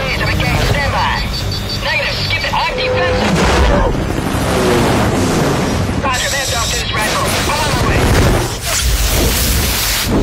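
Film action soundtrack: music mixed with heavy booms and explosions, and with voices or cries over the top.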